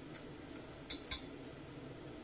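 Two short, light clicks about a second in, a fifth of a second apart, over a quiet room background.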